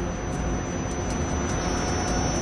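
Jet noise from the JF-17 Thunder's Klimov RD-93 afterburning turbofan as the fighter flies overhead at a distance: a steady rushing sound with a low rumble underneath.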